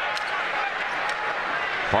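Steady murmur of a basketball arena crowd during a stoppage in play, with faint indistinct voices.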